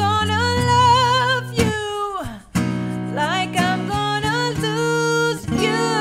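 A woman singing a slow pop ballad with vibrato on long held notes, accompanied by a strummed acoustic guitar. Her phrase slides down and breaks off briefly a little after two seconds in, then the singing resumes over the guitar.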